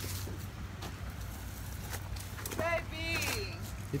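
Footsteps on a trail with a steady low rumble on a handheld camera's microphone. A faint voice makes a brief sound about two and a half seconds in.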